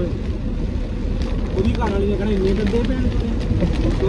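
Steady low rumble of road and engine noise inside a moving car's cabin, with people's voices over it.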